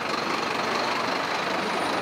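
Garbage truck engine running steadily.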